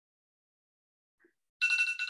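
Near silence, then about a second and a half in a short electronic ringing tone with steady pitches, like a phone or computer alert.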